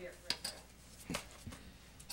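A few light clicks and knocks from a handheld microphone being passed over and handled.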